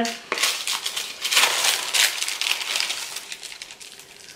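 Paper bag and plastic wrapping of wax melt bars rustling and crinkling as they are handled, a run of sharp crackles that grows quieter toward the end.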